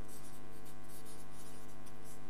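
Felt-tip marker writing on flip-chart paper in a quick series of short strokes, over a steady electrical hum.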